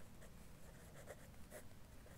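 Faint scratching of a pen on paper, several short strokes as a word is handwritten.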